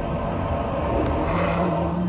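A low rumbling soundtrack effect that swells into a whoosh about a second in, with a short steady hum under it near the end.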